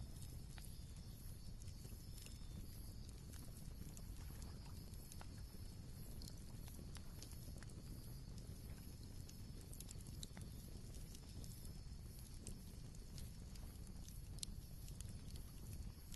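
Faint crackling of a burning wood fire: scattered sharp snaps and pops over a low steady rumble.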